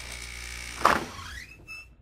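Sound effects for an animated production logo: a low steady rumble, a sharp whoosh a little under a second in, then a rising whine.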